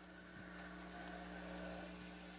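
A faint, steady hum made of several held tones, machine-like in character, that fades in just after the start.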